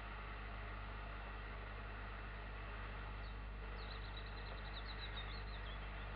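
Faint steady hiss and low hum of an analog camera recording. About four seconds in, a small bird sings a rapid high twittering phrase lasting about two seconds.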